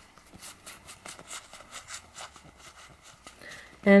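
Cards of a Marziano tarot deck sliding and flicking against each other as they are passed from hand to hand, a run of soft, irregular ticks and rustles of card stock.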